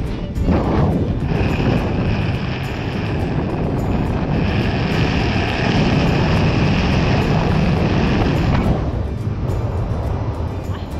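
Wind rushing hard over the camera's microphone under an open tandem parachute during steep spinning turns, with a steady high whistle over it that stops near the end.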